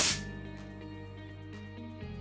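Fabarm L4S semi-automatic shotgun's bolt snapping closed as the bolt release button is pressed: a single sharp clack right at the start, dying away quickly. Steady background music runs on after it.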